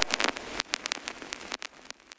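Crackling, rain-like noise with scattered clicks left over as a lo-fi hip hop track ends, fading and thinning out toward the end.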